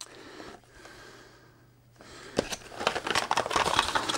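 Packaging and plastic items being handled on a desk: faint at first, then from about halfway a busy run of rustles and small plastic clicks.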